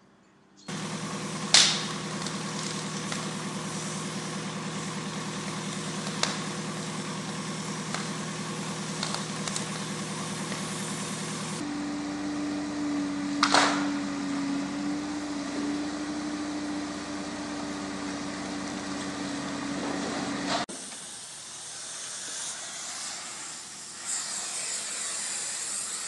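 Demolition excavator's diesel engine running steadily, its note changing abruptly twice. Sharp impacts of breaking debris stand out, the loudest about a second and a half in and another near the middle.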